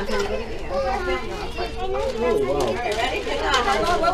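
Overlapping chatter of adults and children talking and calling out over one another.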